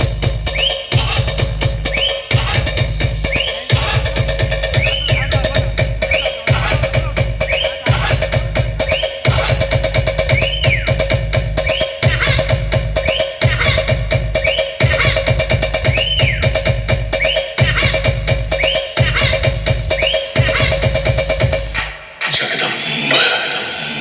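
Electronic dance track played loud through a large outdoor DJ sound system of stacked speaker cabinets: heavy bass beats in repeating phrases, with a rising-and-falling effect sound about every second and a half. The bass drops out about two seconds before the end.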